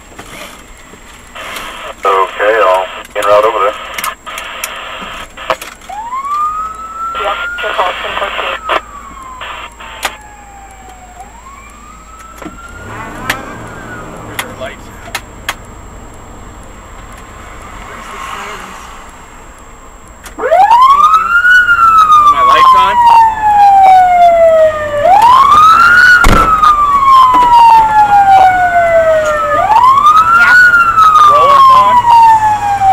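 Fire vehicle siren wailing loudly from about two-thirds in, each cycle rising quickly and falling slowly, repeating about every four and a half seconds. Before it come fainter single siren glides and short bursts of two-way radio voice.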